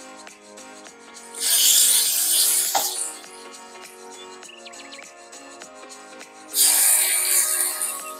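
Hot oil in a nonstick frying pan sizzling loudly as chicken thighs are laid in, twice: about a second and a half in, and again near the end. Background music plays throughout.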